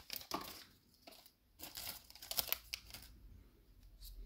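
Foil wrapper of a Magic: The Gathering booster pack crinkling in short, irregular rustles as the cards are pulled out of the freshly opened pack.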